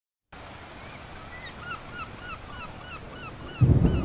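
Ocean surf washing steadily, with a bird calling over it in a quick series of short repeated calls. Near the end a music track comes in with a heavy low beat.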